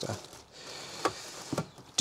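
Thin plastic carrier bag rustling as spare parts are handled in a cardboard box, with a couple of light knocks from the parts.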